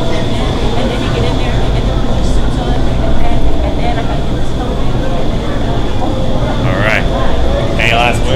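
Loud, steady rush of air from an indoor skydiving vertical wind tunnel running at flying speed with flyers in it, with a thin steady high whine over the low rumble. Voices talk briefly over it near the end.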